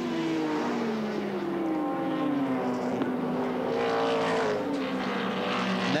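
V8 touring cars, a Chevrolet Camaro and a Holden Commodore, racing past at speed. One engine note falls in pitch over the first couple of seconds, then another engine climbs and falls again around four seconds in.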